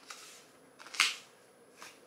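Plastic candy-kit tray being handled while powder and water are mixed in it: light rustling, with one sharp plastic click about a second in and a softer one near the end.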